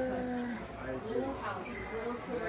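Indistinct voices talking in the background, with no clear words.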